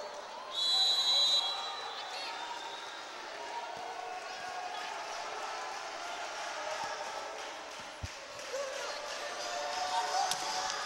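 A referee's whistle gives one short, high blast about half a second in, the signal to serve, over the steady noise of the gym crowd. A single ball strike comes near the end.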